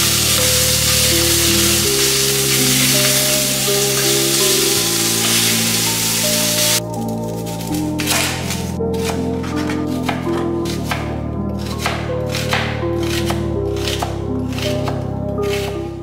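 Background music with slow chord changes over the whole stretch. Under it, ground beef sizzles in a frying pan for the first seven seconds, stopping abruptly; then a kitchen knife chops through an onion onto a plastic cutting board in a run of sharp, irregular cuts.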